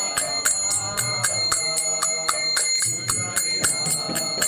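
Devotional kirtan music between sung lines: small hand cymbals (karatalas) struck in a steady beat, about four strikes a second, ringing over held instrumental tones.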